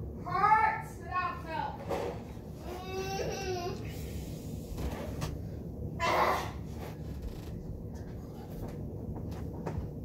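Young people's voices making wordless, pitched vocal sounds in short bursts during the first few seconds, then a short breathy burst about six seconds in, while they suffer the burn of an extremely hot chili chip.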